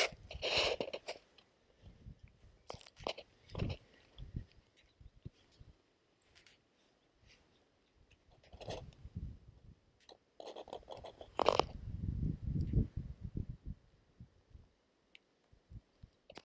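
Footsteps crunching over dry ground and plant litter, irregular and fairly quiet, with gaps between them and a louder cluster past the middle.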